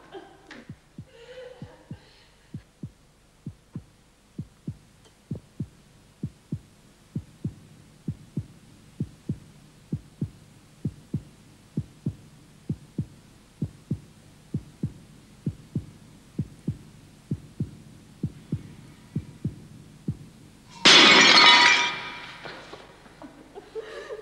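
A steady low thudding beat, about two a second, like a heartbeat sound effect. Near the end a clay jar smashes on a stone floor, the loudest sound.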